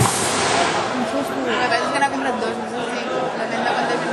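Background chatter of several voices talking over one another, with a single sharp knock about two seconds in.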